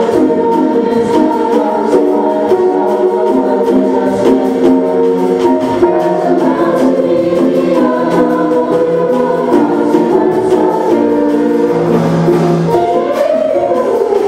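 Concert choir singing a bossa nova in several parts, held chords moving over a steady light rhythmic beat.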